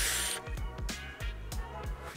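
Air hissing through the Geek Vape Peerless RDTA's wide-open airflow during a draw, cutting off about half a second in; then background music with a steady beat.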